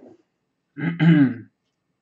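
A man clearing his throat once, in two quick pushes, about a second in.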